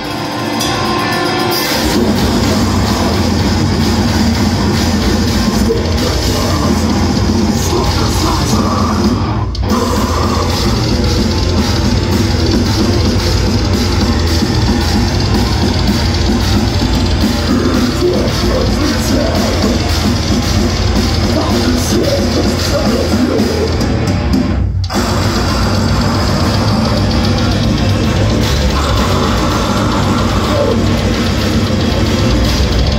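Grindcore band playing live and loud through a club PA: distorted electric guitars through 5150 amp stacks, bass and fast drums. The full band comes in about two seconds in and stops dead for an instant twice, about a third of the way through and again later on.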